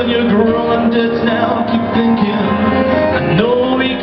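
Live amplified music: a male voice holding long, wavering sung notes over instrumental accompaniment, with a rising glide in pitch near the end.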